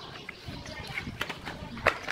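Plastic mold full of wet cement handled and flipped over: faint rustling and a few light knocks, then a sharp knock near the end as the upturned mold is set down on the wooden table.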